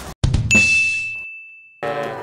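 A short thump, then a single bright ding on one high tone that rings and fades out over about a second and a half: an added editing sound effect at a scene transition.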